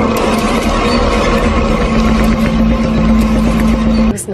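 Loud, dense rushing noise from the film's soundtrack, with a steady low hum underneath and scattered clicks through it, cutting off abruptly at the end.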